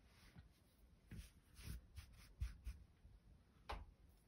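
Faint crochet handling noise: a few soft rustles and light knocks as a crochet hook is set down on a table and the crocheted blanket is moved about, the sharpest knock near the end.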